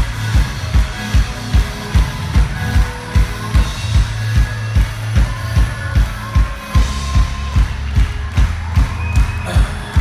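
Live band playing an up-tempo pop-rock song over a PA, with a steady kick drum at about two beats a second over a held bass note.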